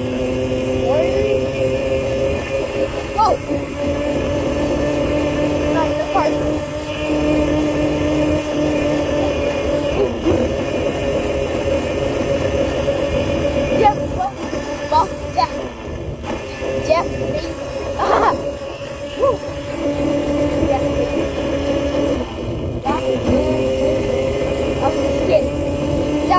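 Motor of a small ride-on vehicle running with a steady hum whose pitch steps up and down as the speed changes, with occasional clicks and knocks, one louder about 18 seconds in.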